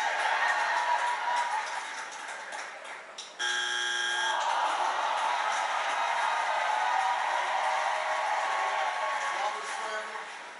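Game-show audio from a television: studio audience cheering and applauding, cut about three seconds in by a steady electronic buzzer about a second long, after which the cheering carries on.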